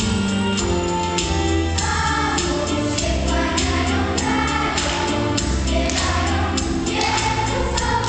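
Children's choir singing a Polish Christmas carol over an instrumental accompaniment with a steady beat.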